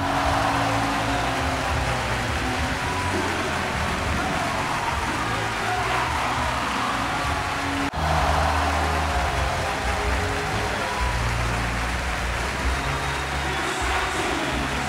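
Music with a deep, steady bass line playing through a venue sound system over the continuous noise of a crowd, with a brief dip about eight seconds in.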